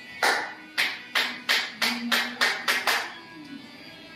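A barber's hands striking a customer's head, neck and shoulders in a percussive post-haircut massage: about nine sharp slaps in under three seconds, coming quicker toward the end, over background music.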